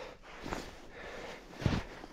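Boots stepping through deep snow: two soft crunching footfalls about a second apart, the second heavier.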